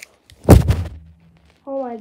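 A single loud bump of handling noise about half a second in, dying away quickly, as the phone's microphone is knocked against fabric. A child's voice starts near the end.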